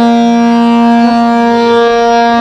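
Harmonium holding a long reedy note, joined soon after by a lower note, with a small change in the melody about a second in: the steady melodic accompaniment (lehra) for a teentaal tabla solo.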